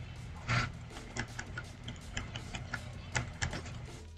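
Scattered light clicks of a computer keyboard and mouse, about a dozen irregular taps, over a steady low hum.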